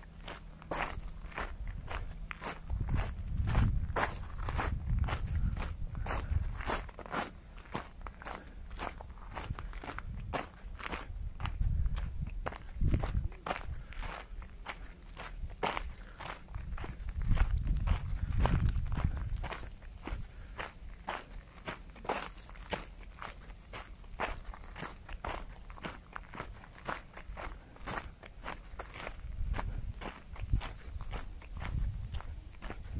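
Footsteps of a person walking on a gravel path, a steady crunching step about twice a second.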